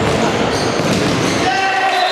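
A futsal ball being dribbled and kicked on a hard indoor court, with voices and general noise echoing through the sports hall. About one and a half seconds in, a steady, horn-like sound with several held tones starts and keeps going as the shot goes in.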